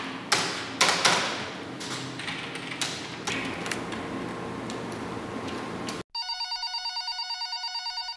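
Typing on a computer keyboard, with scattered loud key strikes, for about six seconds. The sound then cuts off suddenly and a phone rings with a rapidly pulsing trill for the last two seconds.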